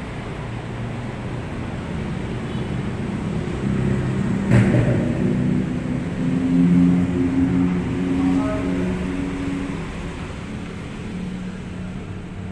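A steady low mechanical rumble with a hum that grows louder in the middle, and a single sharp click about four and a half seconds in.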